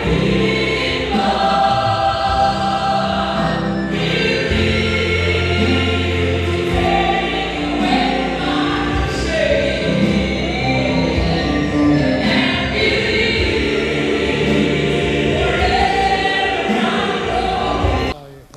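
A gospel song: a woman soloist singing into a microphone with a choir singing along, over steady instrumental backing with low bass notes.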